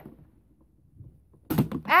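Pie Face game's spring-loaded plastic hand snapping up and smacking into a face: a single sudden thunk about one and a half seconds in, after a few faint clicks as the handle is turned.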